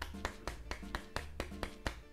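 A small cardboard juice carton shaken hard between the hands, tapping about four or five times a second, over steady background music.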